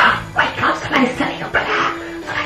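A dog barking several times in quick succession, short separate barks over background music with a steady held tone.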